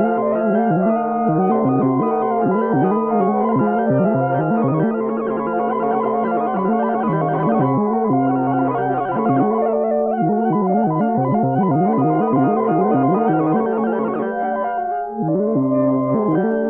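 Electronic music played on synthesizers: steady low held notes under a busy run of quick pitched notes, thinning out briefly near the end.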